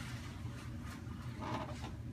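Steady low room hum with faint, soft sounds of hands pressing and rolling a lump of clay during wedging, and a brief faint voice about one and a half seconds in.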